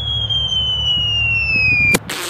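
A single long whistle gliding steadily down in pitch, the falling whistle of something dropping from the sky, as the model rocket comes back down without its parachute. It cuts off abruptly with a click near the end, over a low steady rumble.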